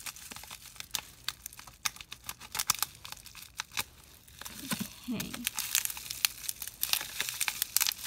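Bubble wrap crinkling and crackling as it is pulled off nail polish bottles by hand, in many irregular sharp crackles.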